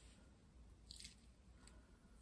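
Near silence, with faint soft crackles about a second in and again shortly after: fingers peeling dead skin, loosened by a foot peel mask, off the sole of a foot.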